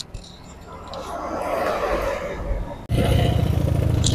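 A rushing engine-like noise swells over the first three seconds, then cuts abruptly to a Honda Beat ESP scooter's small single-cylinder engine idling with a fast, even pulse.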